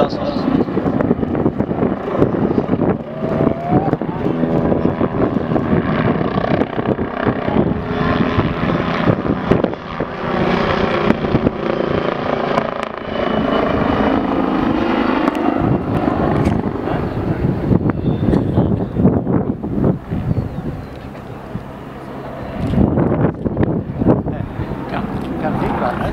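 Bölkow Bo 105 helicopter flying aerobatic manoeuvres: rotor and twin turbine engines heard from the ground, the sound swelling and shifting as it turns, with a brief dip in loudness a few seconds before the end. People are talking close by.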